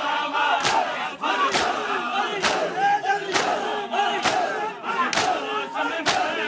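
A large crowd of men performing matam: bare-handed slaps on their chests struck together in a steady beat, about one strike a second. Between the strikes, men's voices chant together.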